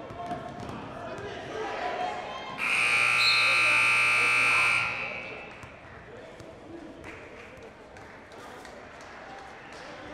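Gymnasium scoreboard buzzer sounding one steady, loud blast of about two seconds as the game clock hits zero, ending the quarter. Crowd voices and court noise run under it.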